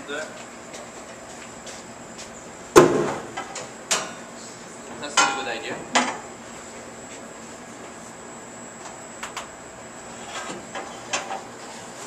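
Stainless steel saucepans clanking on a stove-top grate as they are lifted and set down, with a loud clank about three seconds in, a few more with a short metallic ring a couple of seconds later, and lighter knocks near the end.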